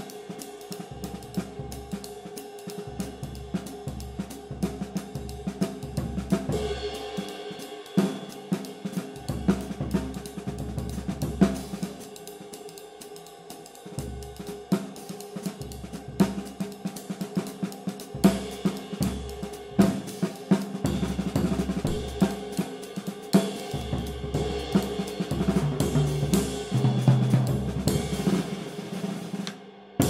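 Full drum-kit groove led by a Bosphorus 21" Antique Series medium ride cymbal, played with a stick in a steady ride pattern over its sustained, dark wash. Snare, bass drum and hi-hat keep time with it.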